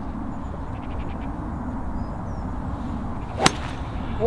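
A five wood striking a golf ball off the fairway: one sharp crack of impact about three and a half seconds in, over steady low background noise.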